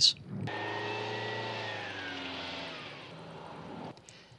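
An aircraft flying over: a steady drone of several tones that slowly fall in pitch as it fades, starting about half a second in and cutting off just before the end.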